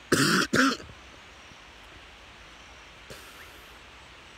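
A man coughing twice in quick succession, two harsh bursts within the first second, followed by faint background hiss.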